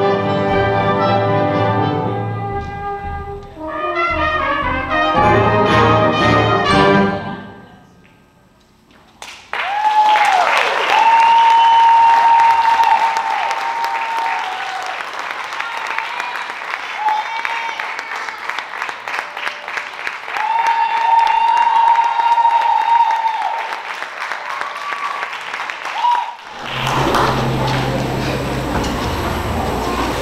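A school concert band's closing brass chords, then a short hush and about seventeen seconds of audience applause with whistles. Near the end the applause stops and a low hum with stage noise follows.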